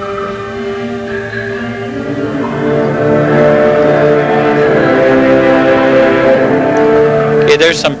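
Wind ensemble playing sustained chords that swell louder about two to three seconds in and hold at full volume.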